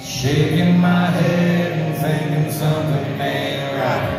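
Live acoustic performance heard from the audience: a man singing long held notes over strummed acoustic guitars.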